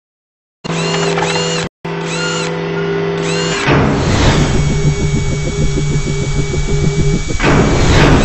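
Synthesized logo-intro sound design: held electronic tones with repeated rising-and-falling chirps, a brief cut, then a whoosh about three and a half seconds in leading into a fast pulsing buzz, and a second whoosh near the end.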